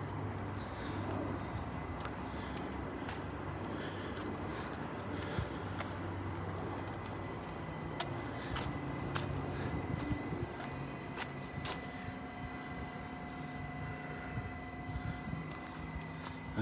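Outdoor urban background: a steady low hum of distant traffic, with a few faint ticks and a faint steady high tone.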